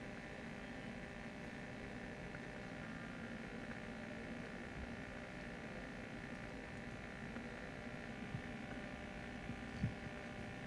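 Steady electrical hum from the hall's microphone and sound system, made of several steady tones, which the uploader puts down to a microphone not working properly. A couple of faint clicks come near the end.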